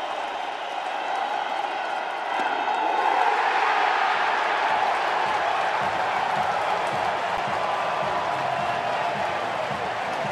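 Large stadium crowd cheering and applauding, swelling loudly about two and a half seconds in at a strikeout that ends the inning, then staying loud.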